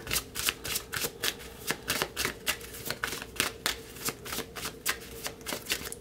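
A deck of tarot cards being shuffled by hand overhand, a quick uneven run of soft card-on-card slaps and flicks, several a second.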